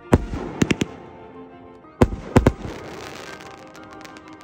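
Aerial fireworks going off: a sharp bang with a few quick reports just after it, another bang with two more close behind about two seconds in, then small crackling pops, heard over background music.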